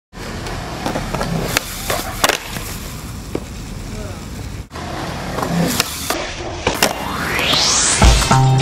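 Skateboard wheels rolling on concrete, with several sharp clacks of the board striking the ground. Near the end a swoosh climbs steadily in pitch.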